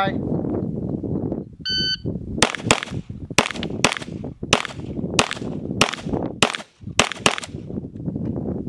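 A shot timer beeps once, and under a second later a Glock pistol fires a fast string of about ten shots, each ringing out briefly, over about five seconds: a timed run at targets from the ready position, clocked at 5.62 seconds.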